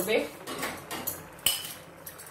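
Metal cookware clinking against a kadai of simmering bhaji: a few light knocks, then a sharp metallic clink with a brief ring about one and a half seconds in.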